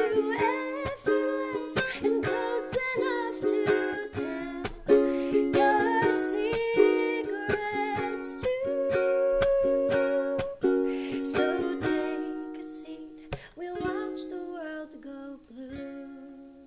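A woman singing while strumming a ukulele, the closing bars of a song. The strumming thins out in the last few seconds and the final chord rings and fades away.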